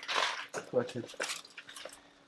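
Quiet, indistinct voices, with faint clinks and scrapes of a knife and fork carving roast meat on a wooden board.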